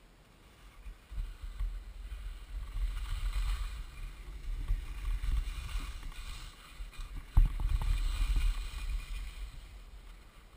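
Wind buffeting an action camera's microphone as its wearer skis downhill, with the skis scraping and hissing over chopped-up snow, swelling and easing with the turns. A sharp knock sounds about seven seconds in.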